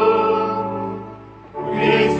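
Choir singing an offertory hymn: a held chord fades away, and a new phrase comes in about a second and a half in.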